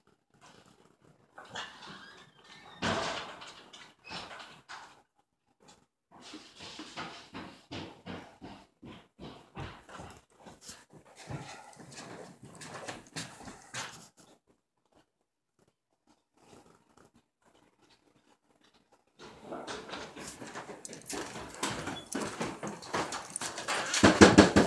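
Dog vocalising in short, irregular bursts, with a silent stretch of several seconds past the middle and louder sound building near the end.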